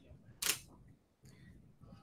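A single short, sharp click about half a second in, from a pole spear being handled by its rubber band.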